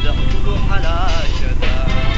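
A Somali song: a singer's voice in wavering, gliding phrases over a steady low accompaniment.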